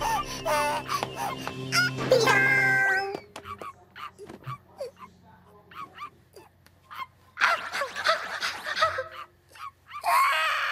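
Anime soundtrack: music with a voice for about the first three seconds, then a quiet stretch of scattered small knocks and short sounds, with a louder vocal passage near the end.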